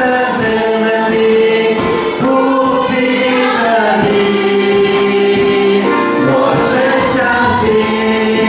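A worship band and congregation singing a slow Mandarin worship song together, led by a female singer, over keyboard and electronic drum kit accompaniment, with long held notes.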